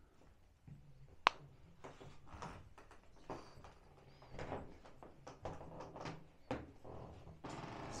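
Faint footsteps and knocks on old wooden floorboards, with one sharp click about a second in.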